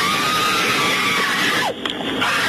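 A woman screaming: one long, high-pitched cry held for about a second and a half, falling away near the end.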